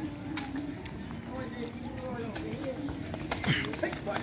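Children playing street football: faint calling voices, with scattered taps of a ball being kicked and feet running on a dirt road.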